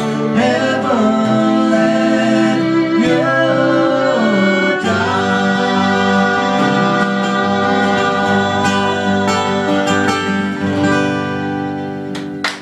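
Live acoustic folk music: two strummed acoustic guitars and a fiddle behind a woman singing. The music thins and the last chord rings down near the end.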